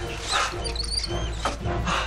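Rats squeaking with short, high chirps amid scrabbling rustles, over a low, droning music score.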